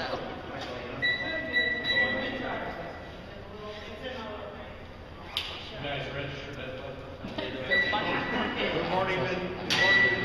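Hand-held security metal detector wand sounding a steady high beep for about two seconds, then shorter beeps near the end, alerting as it is passed over a person being screened, with voices talking underneath.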